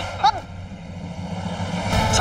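A woman's short startled cry about a quarter second in, then a low rumbling drone of the dramatic background score that swells steadily louder.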